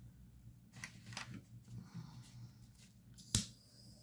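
Quiet handling of tools on a craft table: faint scattered clicks and rustles, then one sharp, loud click about three and a half seconds in.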